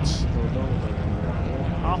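Junior rallycross cars' engines running under racing load, a steady low drone, with the commentator's voice coming back in near the end.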